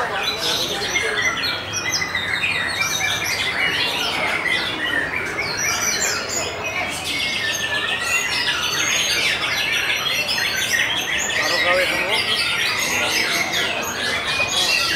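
Several caged songbirds singing at once, a white-rumped shama among them, making a dense, unbroken tangle of overlapping whistles, chirps and rapid trills.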